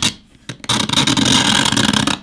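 A metal blade scraping along the Surface Pro 6's painted metal frame, scratching through the paint. A short quiet moment, then a steady scrape from about half a second in.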